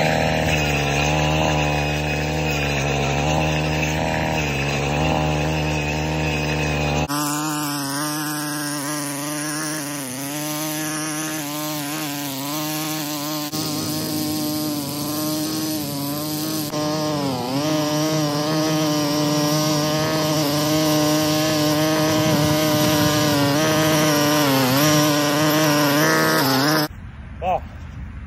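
Stihl multi-tool power head with its edger attachment running as the blade slices a line through thick turf, the engine note rising and dipping with the load. The sound changes abruptly about a quarter of the way through and sounds more distant. It stops about a second before the end.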